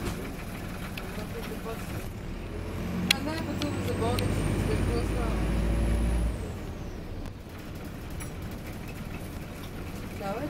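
Optare Versa single-deck bus engine and running noise heard from inside the passenger saloon while the bus is moving. The low rumble grows louder through the middle and drops off abruptly about six seconds in, with a sharp click about three seconds in.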